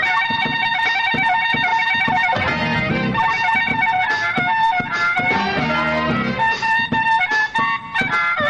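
Live blues band with a harmonica soloing in long held notes over electric guitar, bass and drums.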